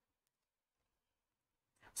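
Near silence: room tone, with a faint tick about a quarter second in.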